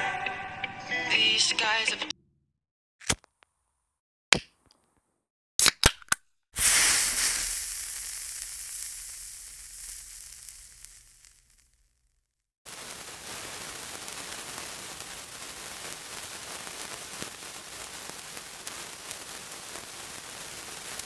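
A song ends about two seconds in, followed by fire sound effects: a few sharp cracks, then a loud rushing burst of flame that fades away over about five seconds. After a brief silence, a steady hiss of burning with faint crackles starts about halfway through.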